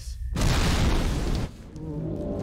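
Cartoon explosion sound effect from a film soundtrack: a sudden loud blast and rumble about a third of a second in, easing off about a second later as a plume shoots into the sky.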